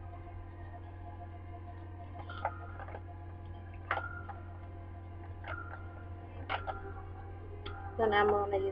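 A steady low hum with about five faint clicks and taps spread through the second half, a couple of them followed by a brief ringing tone.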